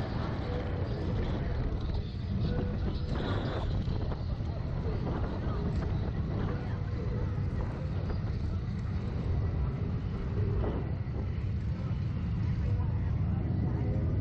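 Steady low rumble of wind buffeting the camera microphone on a slingshot ride capsule as it swings and comes down, with faint voices under it.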